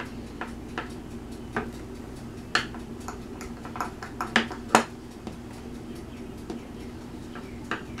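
Scattered light clicks and taps as soft polymer clay is rolled and pressed by hand with a clear acrylic roller on a cutting mat, the two loudest a little past the middle, over a faint steady hum.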